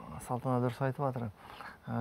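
Only speech: a man talking in a panel discussion, with a short pause just before the end.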